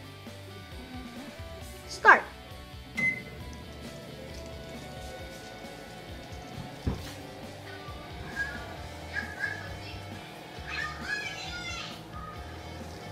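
Microwave oven running, heating a mug of water, with a steady low hum. A short beep comes about three seconds in, just after a loud rising whoop. Faint voices and music from an iPad game play in the background.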